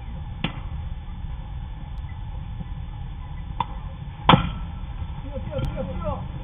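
A baseball bat hits a pitched ball with one sharp crack about four seconds in, over a steady low rumble. Two fainter clicks come earlier.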